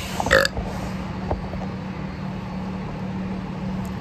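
A man's short burp just after the start, over a steady low hum.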